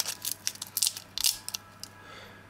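Sun-dried banana peel crackling and crunching as it is crushed in the hand: irregular crisp crackles that thin out near the end. The peel has been dried on a radiator for two to three days until it is crunchy.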